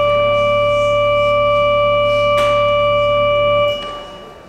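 Church organ holding one sustained chord, which is released shortly before the end and dies away in the church's echo.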